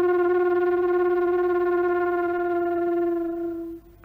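Bamboo flute holding one long low note with a slight waver; it stops a little before the end.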